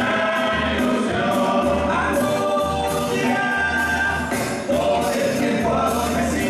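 Murga choir of many voices singing together over a murga drum section: a bass drum beating a steady low pulse, with snare drum strokes on top.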